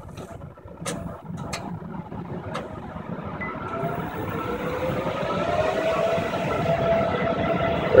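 A DC fast charger starting a charging session: a few sharp clicks in the first seconds, as of relays closing, then a hum and whine from its power electronics and fans that grows louder and rises in pitch as the charge current ramps up.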